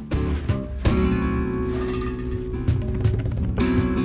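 Background music: an acoustic guitar strummed in flamenco style, sharp strokes with chords ringing on between them.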